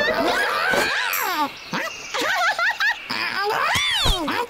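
Cartoon squirrel and rabbit characters making wordless, animal-like vocal noises: squeaky chattering calls that slide up and down in pitch, with a few short quieter gaps near the middle.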